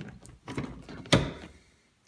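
A snap fastener on a vinyl soft-top door is pressed shut by hand: a light click, then one sharp snap about a second in.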